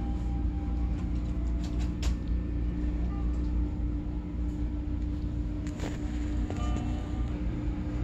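Steady low rumble of store background noise with a constant hum, faint background music and a few light clicks.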